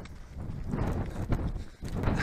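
Running footsteps on a flagstone path, a steady beat of about three strides a second.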